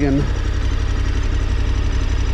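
KTM 1290 Super Adventure R's V-twin engine idling steadily with an even low pulsing rumble.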